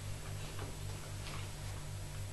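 A man quietly sipping red wine from a glass, with a few faint slurps, over a low electrical hum that pulses about four times a second.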